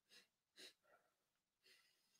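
Near silence, with a few faint sniffs from a person smelling perfume on the wrist.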